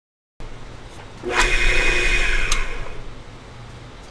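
Drill press spinning a wooden cone while sandpaper backed by flat stock is pressed against it for the final sanding: a loud, steady sanding hiss with a whine starts about a second in and cuts off sharply a second and a half later as the paper is lifted. The drill press motor hum carries on underneath.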